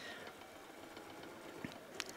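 Faint room tone with a single small click shortly before the end.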